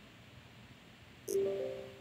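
Windows 10 User Account Control alert chime, a short tone of a few steady notes that starts just over a second in and fades quickly. It signals that the permission prompt has opened, asking whether the installer may make changes to the PC.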